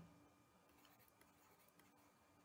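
Near silence: faint room tone with a low steady hum and a few very faint ticks.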